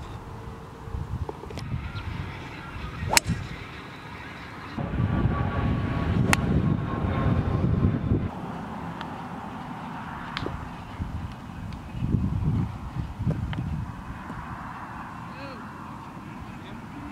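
Golf clubs striking a ball: a sharp click about three seconds in and another about six seconds in, with a few fainter clicks later.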